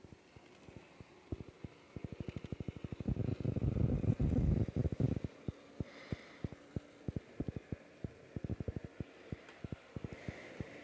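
Bachmann N scale Thomas locomotive running on track, a rapid run of clicks from its wheels and motor, much louder for a couple of seconds around the middle. It is being run in at about half speed after fresh greasing of its gears and axles.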